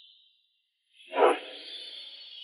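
An edited-in sound effect: after a second of near silence, a sudden whoosh about a second in, then a high, shimmering ring that carries on.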